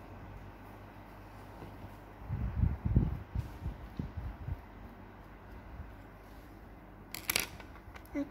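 Handling noise from hands working a plush toy close to the microphone: a run of dull low bumps about two to three seconds in, and a short scratchy rub of fur near the end.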